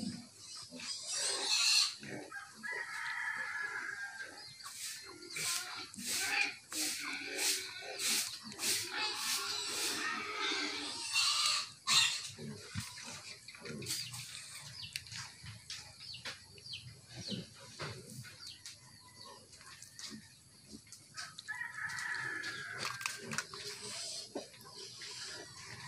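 A rooster crows twice, a few seconds in and again near the end, over a run of short clicks and rustles from close handling in the middle.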